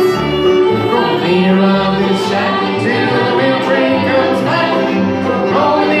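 A bluegrass string band playing live, with fiddle, five-string banjo, acoustic guitar and upright bass in a steady, continuous tune.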